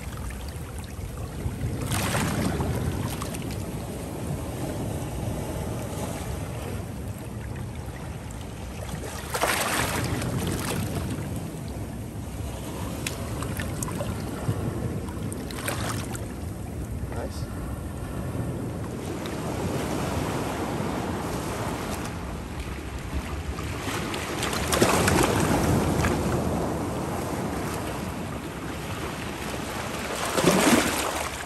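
Shallow seawater washing and sloshing over rocks at the shore, swelling in surges every several seconds, the loudest a couple of seconds long near the end, with wind noise on the microphone.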